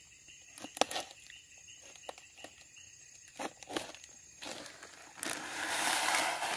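A few faint clicks of handling. Then, about four and a half seconds in, a rustling noise starts and grows louder as fertilizer is shaken out of a plastic bag into a bucket of water.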